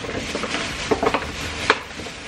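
Thin plastic shopping bag rustling and crinkling as a hand rummages inside it, with a few sharper crackles about a second in and again shortly before the end.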